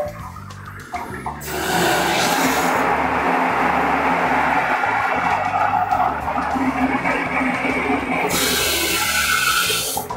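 Water rushing through a tank water heater as the valve on top is opened, shooting mains water into the bottom of the tank to stir up sediment and flush it out the drain. It is a steady hiss that starts about a second and a half in and loses its high edge near the end. Background music plays under it.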